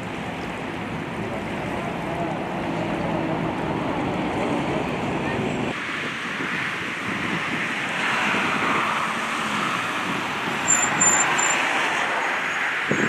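Outdoor ambience: wind and water noise by a rocky shore, then a sudden change to road traffic, with a car driving past on a roundabout. A few short high chirps near the end.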